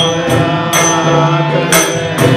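Indian devotional bhajan singing: a man's lead voice sings a melodic line into a microphone over steady accompaniment, with a few bright metallic percussion strokes.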